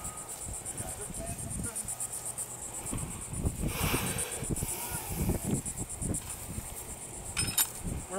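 Insects chirring in the dune grass: a steady, high-pitched pulsing of about six pulses a second, over a low, uneven rumble.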